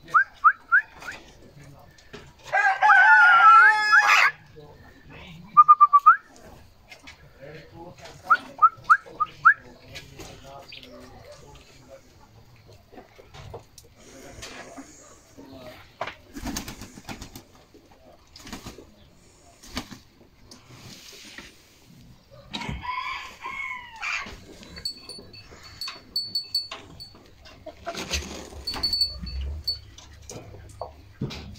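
A rooster crowing once, loud and drawn out, a few seconds in, among short rising chirps from budgerigars. Later there is scattered pecking and scratching noise and another, shorter call from the chickens about two-thirds of the way through.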